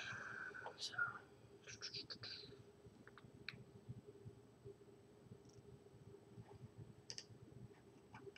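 Near silence with a faint steady hum and a few soft clicks at a computer: a quick cluster about two seconds in, then single clicks near the middle and about seven seconds in.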